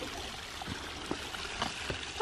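Shallow creek water trickling and running steadily, with a few faint soft knocks.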